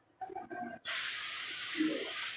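Adai sizzling on a hot oiled tawa, a steady hiss that starts suddenly about a second in, as the pancake is flipped and its uncooked side meets the pan.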